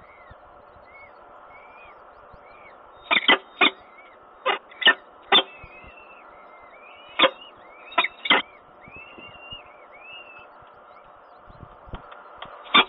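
Faint, high, rising-and-falling cheeps from downy peregrine falcon chicks in the nest, broken by sharp, short clicks that come in groups of two or three.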